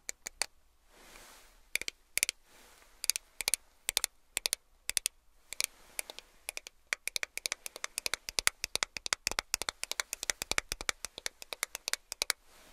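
Fingernails tapping and clicking on a small plastic eyeshadow compact. The taps are sparse at first and grow quicker and denser in the second half.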